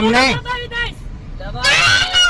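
Loud, shouting voices in a heated roadside argument, one outburst at the start and another near the end, over a steady low rumble of traffic.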